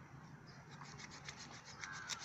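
Faint scraping and light ticks of a curved sickle blade cutting through a cooked whole chicken against a wooden log, the ticks coming more often from about a second in.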